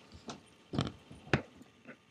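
Four footsteps about half a second apart, coming closer to the microphone; the middle two are the loudest.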